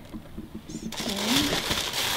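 Paper rustling and crinkling, starting about a second in, as packing tissue in an open box is handled; a brief low murmur of a voice under it.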